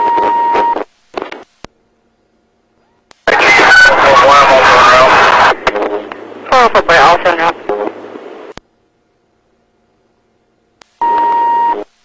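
Police radio traffic: a short steady beep opens the channel and another comes near the end. In between are two bursts of garbled, hissy radio voice, with dead silence between transmissions.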